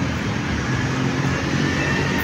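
Road traffic: a car driving along the street close by, a steady engine and tyre noise.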